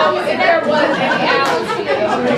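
Several people talking at once: overlapping voices and chatter from the audience, with no single clear speaker.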